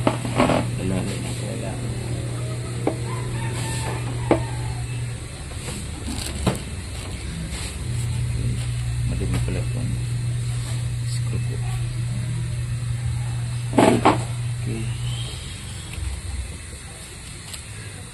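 A steady low machine hum that stops about five seconds in, starts again about three seconds later and dies away near the end, with a few scattered sharp clicks.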